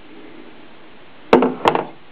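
Two sharp knocks, about a third of a second apart, a little over a second in: the waterproof flashlight being handled and knocked against the plastic basin it is submerged in.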